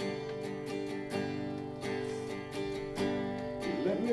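Acoustic guitar strummed steadily in a country rhythm, held chords ringing between strokes, with no singing in this gap between sung lines.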